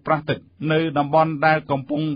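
Speech only: a newsreader's voice reading a bulletin in Khmer, with a short pause about half a second in.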